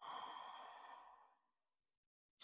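A woman's faint, breathy exhale, a sigh, fading away after about a second.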